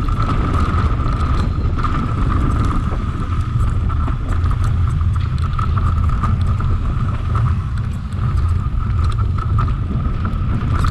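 Mountain bike descending a dirt and gravel trail at speed, heard from a camera on the rider: a heavy wind rumble on the microphone and tyre noise, with small clicks and rattles from the bike and loose stones. A steady high-pitched buzz runs underneath, fading for a moment about two seconds in.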